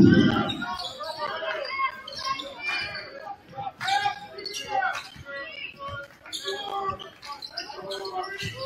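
A basketball dribbled on a hardwood gym floor, with short sharp bounces, sneaker squeaks and the voices of players and spectators in a large gym. A loud burst of crowd noise at the start dies down within the first second.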